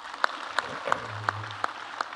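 Audience applauding: a dense patter of many hands, with louder single claps standing out at a fairly regular beat of about three a second.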